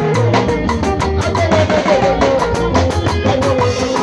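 Live band music with guitar and a drum kit playing a steady, driving beat.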